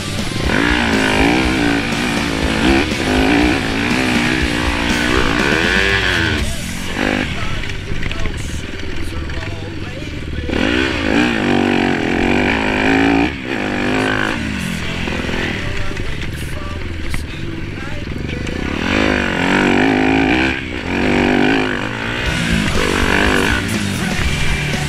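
Yamaha YZ250F's four-stroke single-cylinder engine being ridden hard, its pitch climbing and dropping again and again as the throttle is opened and shut, with the loudest runs near the start, about ten seconds in and near the end.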